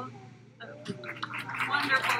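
Small live audience clapping and cheering, swelling from about a second in.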